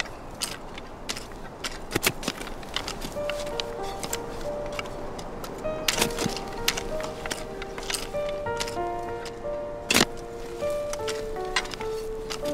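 Two-pronged hand forks being driven into and levering soil, a run of sharp knocks with a few heavier ones. Music of slow held notes comes in about three seconds in and carries on over them.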